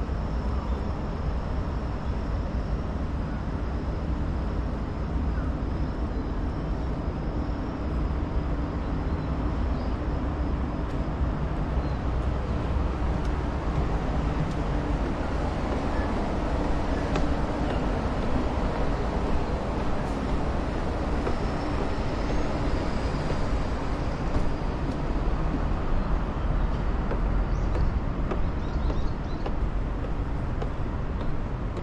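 Steady outdoor city background noise: a low rumble of distant traffic, with a faint steady hum through the middle part.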